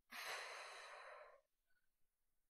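A woman sighing: one breathy exhale lasting a little over a second.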